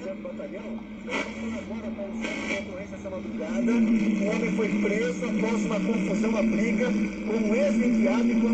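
An AM talk broadcast received on a crystal radio: a voice speaking amid hiss and a steady low hum. It grows clearly louder about three and a half seconds in, as the station is tuned in with the wave trap coil switched into the circuit, which strengthens the signal.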